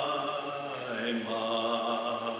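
A voice singing slow, long-held notes, moving to a new note about a second in.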